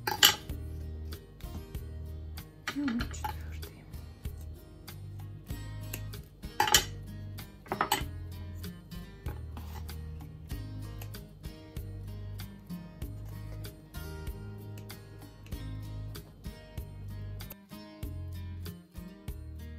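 Background music plays throughout. Over it come a few sharp metallic clicks from steel scissors being snipped and handled: the loudest is near the start, others come around three seconds in and around seven and eight seconds in.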